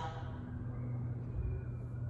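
A steady low hum, with a faint rumble beneath it.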